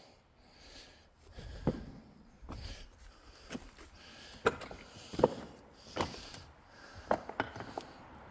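Footsteps and scrambling over loose slate rubble: irregular clacks, knocks and scrapes of shifting stone slabs underfoot, a few sharper knocks standing out near the middle and towards the end.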